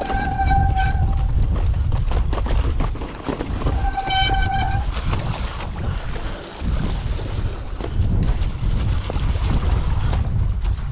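Mountain bike rattling and knocking over a wet stone-flagged track, with wind buffeting the microphone throughout. Two short, steady high-pitched squeals, one right at the start and one about four seconds in.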